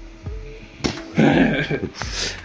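A man laughing loudly from about a second in, over light background music of plucked notes.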